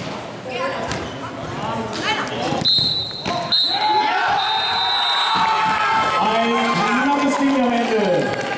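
Indoor five-a-side football: a few thuds of the ball being struck. About three seconds in, a shrill whistle sounds, broken once, over a burst of shouting and cheering from players and spectators as a goal is scored.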